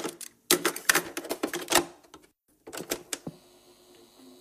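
Rapid mechanical clicking in bursts, separated by short silent gaps. Quiet music begins about three seconds in.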